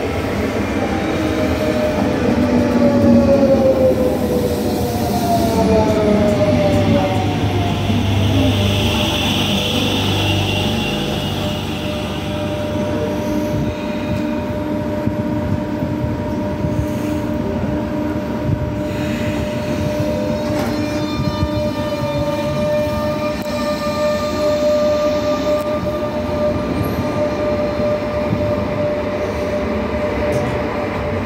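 Renfe Cercanías electric commuter train coming into a station: a motor whine falls steadily in pitch over the first several seconds as it slows. It then settles into a steady electrical tone while the unit stands or creeps along the platform, with a higher tone joining later.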